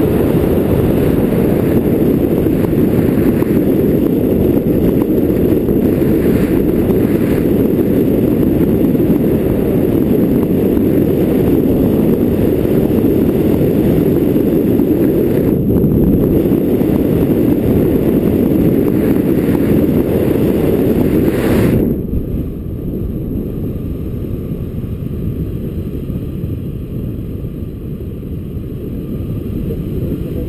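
Wind buffeting the microphone of a pole-mounted camera during a tandem paraglider flight, a loud, steady low rush. About three quarters of the way through it drops suddenly to a quieter level and carries on.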